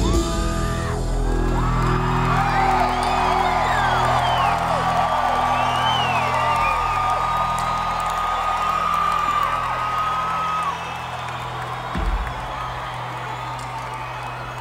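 A live rock band holding low sustained notes as a song winds down, under audience whoops and shouts. A long steady high tone cuts out a little past two-thirds of the way through, and a single thump comes near the end.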